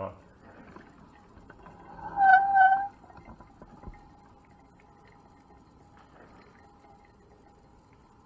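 Drip coffee maker brewing: a short, loud, warbling gurgle about two seconds in, then a faint steady tone.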